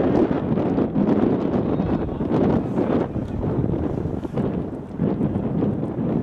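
Wind buffeting the microphone: a loud, gusty rush without pitch that rises and falls, with a brief dip a little before the end.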